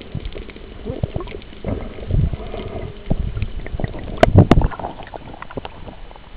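Muffled sea water sloshing and gurgling around a camera held underwater as it is brought up to the surface beside a boat hull, with a cluster of loud sharp knocks about four seconds in.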